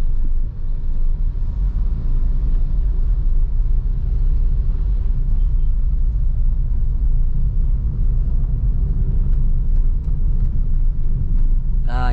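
Steady low rumble of a Suzuki Ertiga's engine and tyres, heard inside the cabin as the car pulls away and drives on.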